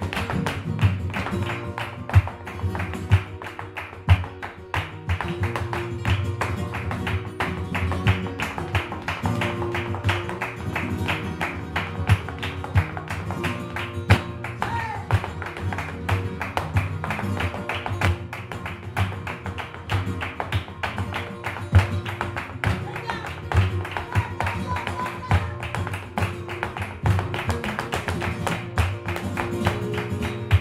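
Live flamenco music: flamenco guitars playing with a dense run of sharp, rhythmic strikes from the dancer's shoe footwork and handclaps.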